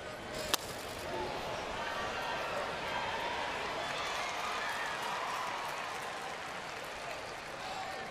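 Crack of a wooden baseball bat hitting a pitched ball, once, about half a second in, followed by the ballpark crowd's noise swelling as the hit carries to the outfield wall.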